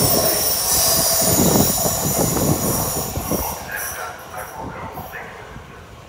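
C20 metro train pulling away into the tunnel, its wheels rumbling with a thin high squeal, the sound fading steadily as it goes.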